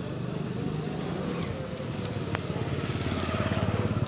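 A motorcycle engine running as it approaches, growing louder toward the end, with one sharp click a little over two seconds in.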